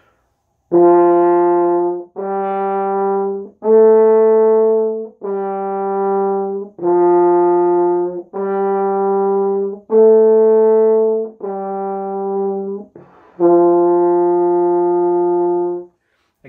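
French horn playing the beginner's first three notes, written C, D and E (sounding F, G and A), as nine separate notes stepping up and down: C, D, E, D, C, D, E, D, and a final longer-held C.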